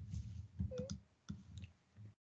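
A few quick computer mouse and keyboard clicks while selecting and copy-pasting text on a computer.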